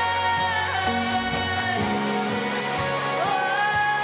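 Live worship music: female vocalists singing a long held note over an electric guitar and band. The note slides down a little under a second in and back up near the end.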